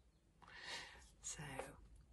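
A woman's soft, breathy exhale, then the word "so" spoken quietly.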